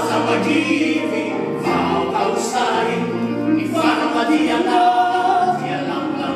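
A small group of men singing together in harmony, with sustained low bass notes under the higher voices.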